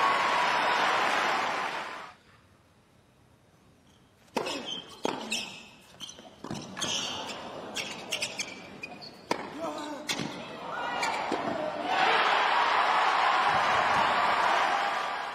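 Tennis arena crowd applauding and cheering, dying to a hush about two seconds in. A rally follows from about four seconds in: a run of racket-on-ball strikes roughly every 0.7 s. The crowd rises again near the end into loud applause and cheering as the point is won.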